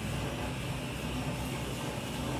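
Steady low hum and hiss of a restaurant's background room noise, with no distinct events.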